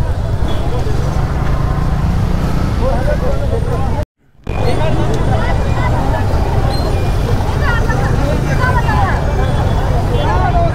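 Busy street din: many people chattering at once over the steady low rumble of idling motorcycles and traffic. The sound drops out completely for about half a second about four seconds in.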